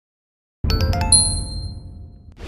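Logo sound effect: starts suddenly about half a second in with a low rumble and a quick run of bright chiming notes, which ring on and slowly fade.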